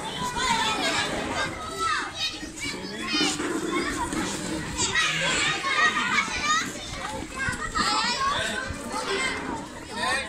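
Many children's voices chattering and calling out at once, a lively babble of kids at play, with some adult talk mixed in.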